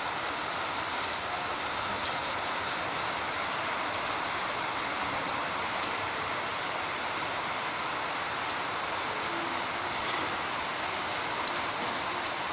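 Steady rain falling on a wet concrete yard, puddles and garden shrubs, an even, continuous hiss with a small tick or two of heavier drops.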